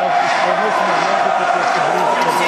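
A film soundtrack played through cinema speakers: a voice with a wavering pitch over the dense, steady noise of a football crowd.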